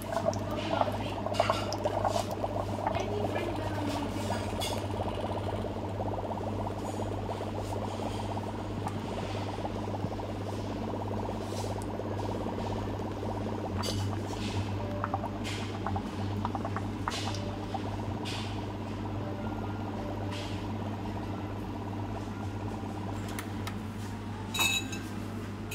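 Liquid trickling down a bar spoon into a stainless steel shaker tin while a foam of bubbles builds up in it, with small crackles and pops, over a steady low hum.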